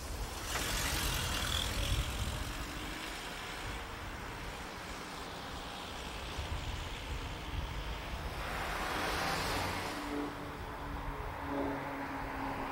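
Cars driving past on a residential street. The tyre and engine noise swells twice, a little after the start and again near the end, and a low engine hum follows as a car comes up to the traffic circle.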